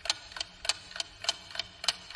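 Clock ticking steadily, about three sharp ticks a second.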